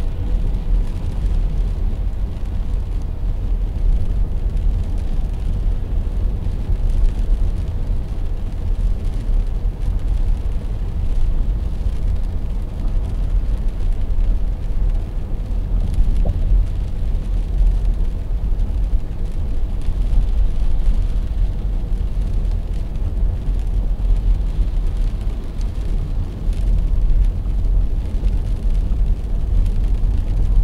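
Steady low rumble of a car at highway speed, about 70 km/h, on wet pavement, heard from inside the cabin: engine and tyre noise.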